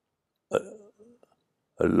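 Silence, then about half a second in a brief, abrupt throat sound from an elderly man, followed by a few faint mouth noises; near the end he starts speaking again.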